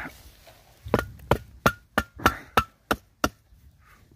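Opened tin can of wet cat food knocked repeatedly over a plastic feeding dish to shake out food that sticks inside: about nine sharp knocks, roughly three a second, starting about a second in, some with a short metallic ring.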